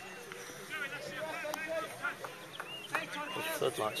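Voices of players and spectators at a football match, calling and chatting throughout, with a man speaking close to the microphone at the very end. A couple of short sharp knocks sound, one early and one late.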